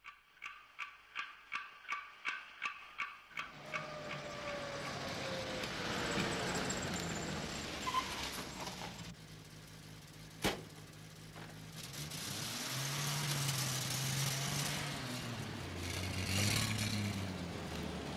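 Regular ticking, about three ticks a second, for the first three seconds. Then period car engines run on a wet street, with a car passing and a single sharp click near the middle.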